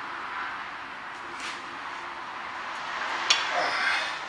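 Hand work on a van's rear brake caliper: a brake hose fitting is tightened into it, heard as faint scraping and handling over a steady background hiss, with one sharp click a little over three seconds in.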